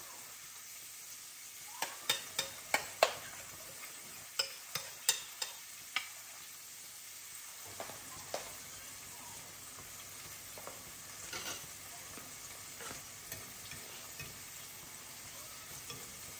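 Saltfish fritter batter frying in a pan with a steady sizzle. A run of about ten sharp clicks of a metal utensil knocking against the bowl and pan comes between about two and six seconds in, as batter is spooned into the pan, with a few fainter ticks later.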